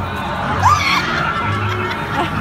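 Loud music with a deep bass line, and about halfway through a single brief, high-pitched vocal cry from someone in the crowd that rises and then falls.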